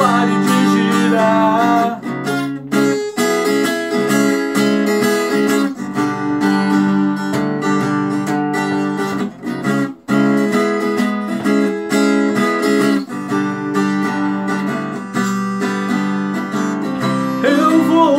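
Strummed steel-string acoustic guitar with a harmonica played from a neck holder, holding long chords over the strumming in an instrumental break. The strumming stops briefly twice, about two and a half seconds in and again around ten seconds, and singing comes back in near the end.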